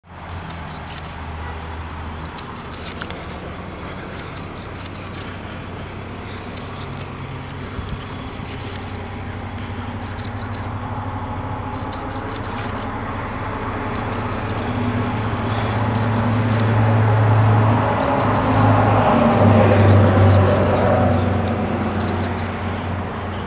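A vehicle engine idling with a steady low hum, growing louder over the last several seconds, with a couple of faint clicks early on.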